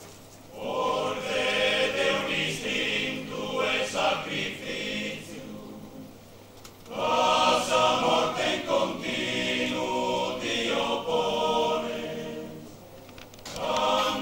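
Sardinian male choir singing unaccompanied in close harmony, in long phrases with short breaks for breath: one phrase begins about half a second in, the next about seven seconds in, and a third just before the end.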